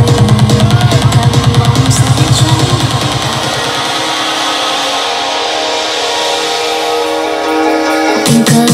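Loud dance music played by a DJ through a sound system: a fast pounding beat for about three seconds, then the bass and beat drop out for a held build-up, and the heavy beat comes back in at the very end.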